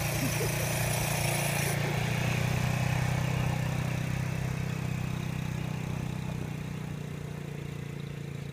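Quad bike (ATV) engine running steadily as the machine drives off, its hum fading gradually over the last few seconds as it moves away.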